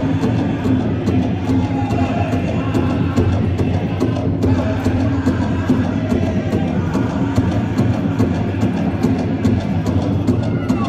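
Powwow drum group: a large hand drum struck in a steady, even beat while the singers voice a Northern Plains–style song for a women's traditional dance.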